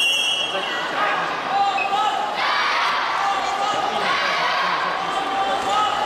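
A short, high referee's whistle blast at the very start, then many children's voices shouting and cheering in a gymnasium, with a ball bouncing on the hardwood court. The voices swell louder a little past the middle.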